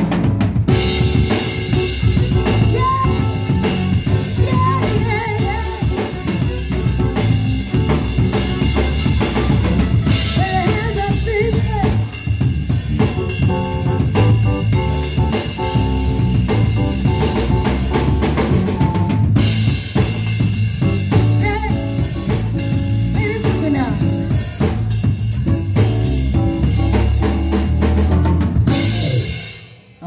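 A live band playing: drum kit with snare, kick and cymbals, electric guitar and keyboard. The music stops near the end.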